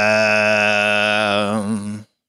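A man's voice holding one long low sung note, wavering near the end and cutting off suddenly, played as a sound clip.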